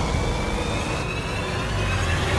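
Low rumbling sound design from an action-movie trailer, with a faint high tone gliding slowly upward over it.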